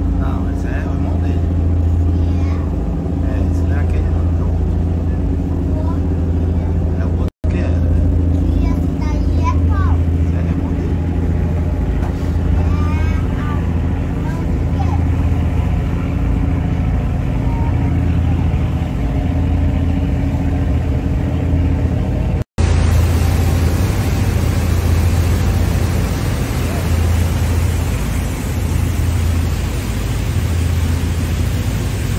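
A riverboat's engine drone heard on board while under way: a steady low hum with a higher overtone above it. After a cut about two-thirds of the way through, rushing water and wind grow louder under the hum.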